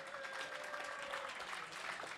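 A small audience applauding: steady, dense clapping.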